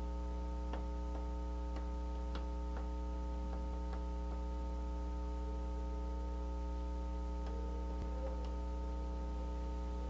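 A steady electrical hum with several overtones, with faint irregular ticks over it, about one or two a second.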